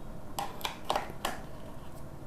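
Four light clicks and scrapes within about a second as the mesh grille is handled and fitted back over the tweeter pod on top of a B&W 703 speaker.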